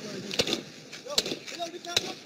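Recorded audio of a police traffic stop played back over a video call: brief men's voices, with sharp knocks about half a second in and again near the end.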